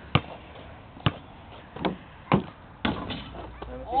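A basketball bouncing on an asphalt driveway, a handful of sharp bounces under a second apart.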